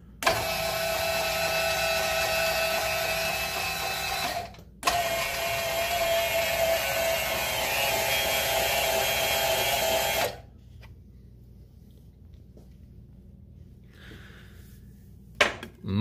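Priest Tools power-lift motor turning the PM-727V mill's Z-axis lead screw, moving the headstock with a steady electric whine. It runs for about four seconds, stops briefly, then runs again for about five more seconds before cutting off.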